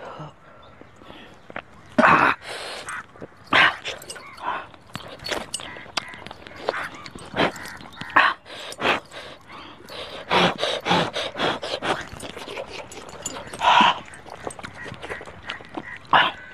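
A man eating noisily from a pan of mutton curry: slurping from a ladle, sucking and lip-smacking on bones, with quick clicky mouth noises. Several short, loud exclamations break in, the loudest about two seconds in and near the end.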